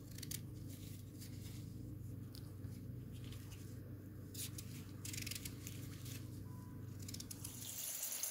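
Faint knife cuts through raw pumpkin as it is chopped into large cubes: scattered soft crunching strokes over a steady low hum.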